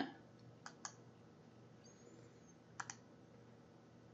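Two faint double clicks of a computer mouse, about a second in and again near three seconds, over near-silent room tone.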